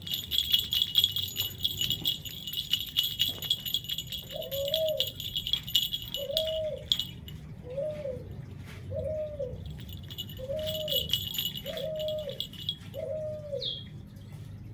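A dove cooing: seven even, arching coos, one about every 1.3 seconds, beginning a few seconds in. Under them is a steady high ringing with fast clicking, which breaks off for a couple of seconds in the middle.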